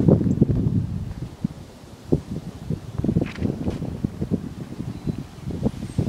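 Wind buffeting the microphone of a handheld camera outdoors, an uneven low rumble with irregular thumps.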